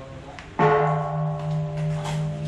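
A temple bell struck once about half a second in, then ringing on with a deep hum and several bright overtones that fade only slowly.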